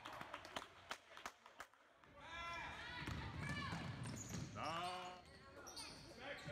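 A basketball bouncing with sharp, irregular thuds on a hardwood gym floor for the first couple of seconds. Then spectators' voices rise, with a laugh near the end.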